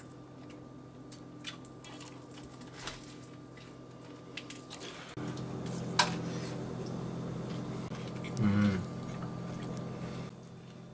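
Wet chewing and small mouth clicks of a man eating a Nashville hot fried chicken sandwich. About five seconds in, a steady low hum comes in, with a sharp click a second later and a short low vocal sound from him near the end.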